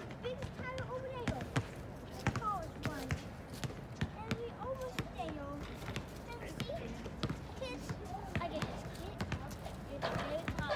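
Basketballs bouncing on a hard court, sharp thuds coming irregularly two or three times a second, with people's voices talking in the background.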